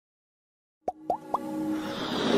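Intro music of an animated title sequence: near a second of silence, then three quick rising pops in a row, followed by a swelling riser that builds toward the music.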